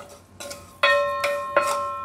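A metal object struck twice, about three-quarters of a second apart, each strike ringing on with a clear bell-like tone that fades slowly.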